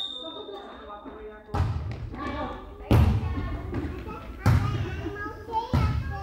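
Volleyball being struck during a rally in a reverberant sports hall: four sharp hits about a second and a half apart, with players' voices calling between them. A referee's whistle tone trails off in the first second or so.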